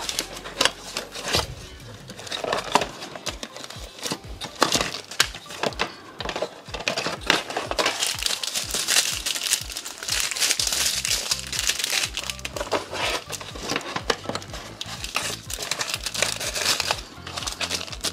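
Small plastic bags of rhinestones crinkling and rustling as they are handled and pushed back into a cardboard kit box, over quiet background music.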